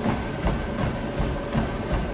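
Feet running on a treadmill belt, an even thud about three times a second, with music playing.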